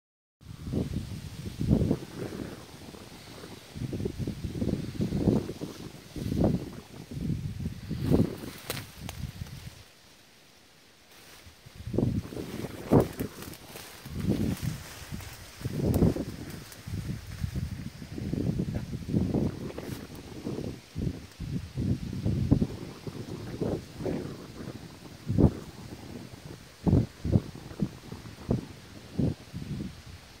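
Wind buffeting a handheld phone's microphone in irregular low gusts, with leaves rustling; there is a brief lull about ten seconds in.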